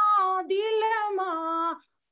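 A woman singing a Gujarati devotional bhajan solo and unaccompanied, in a high voice holding long wavering notes. The phrase breaks off shortly before the end.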